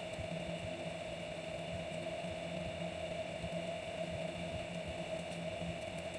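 Steady low background hum with a faint constant whine, unchanging throughout: room tone, with no distinct handling sounds standing out.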